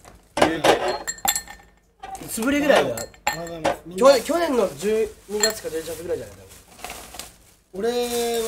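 Glassware clinking on a tabletop, with voices talking over it.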